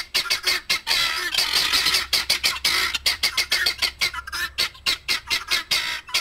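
Guinea fowl calling in a harsh, rapid, repeated chatter of about five or six calls a second.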